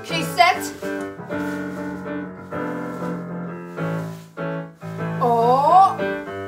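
Yamaha digital piano playing sustained chords, with short pauses between them. A voice calls out briefly about half a second in, and again with a wavering rise and fall near the end.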